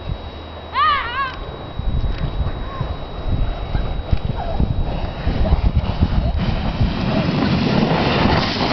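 A person's high-pitched squeal, two or three quick rising-and-falling cries about a second in. Then a low rumble with irregular thumps builds and stays loud while the two-rider inflatable snow tube slides down the slope toward the microphone.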